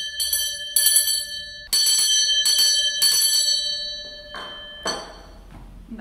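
Brass hand bell with a wooden handle shaken about six times in quick succession over three seconds, then its ringing dies away. This is the council chairperson's bell, rung as the signal for quiet. A short knock follows near the end.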